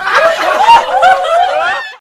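A person laughing right after a joke's punchline, a run of wavering laughs that fades out at the very end.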